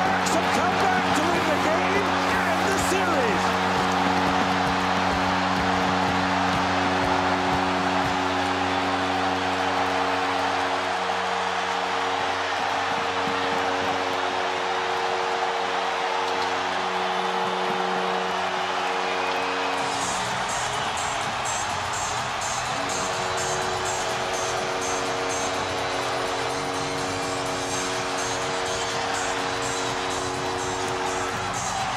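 Arena crowd cheering over music with sustained chords. About two-thirds of the way through, the music changes to a song with a steady, fast beat.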